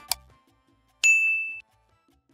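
A single bright ding from a notification-bell sound effect about a second in, holding one high tone for about half a second and cutting off suddenly. Just before it, the last note of a short intro jingle dies away.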